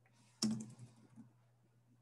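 Computer keyboard typing: a quick run of keystrokes about half a second in, lasting under a second, with the first stroke the loudest.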